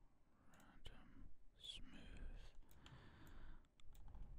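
Near silence: a few faint computer mouse clicks, with soft whispering under the breath.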